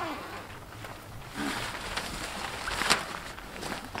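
Pop-up tent's fabric door being unzipped and pulled open: a rustling scrape from about a second and a half in until near the end, with a sharp click near three seconds.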